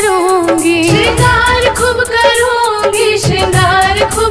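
Hindi devotional bhajan music: a sung melody with wavering ornaments over a steady percussion beat.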